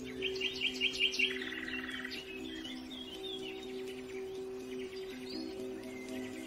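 Forest birdsong: a quick run of about six chirps in the first second, then a trill and scattered calls. Underneath are low, sustained held chords of a slowed, reverb-heavy music track.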